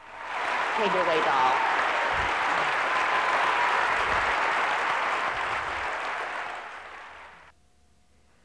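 Audience applauding, with a few voices calling out in the first couple of seconds; the applause tapers off and cuts off abruptly near the end.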